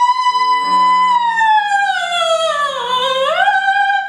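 Operatic soprano singing with piano accompaniment: she holds a high note for about a second, then slides slowly down, rising again near the end. Sustained piano chords come in just after the start beneath the voice.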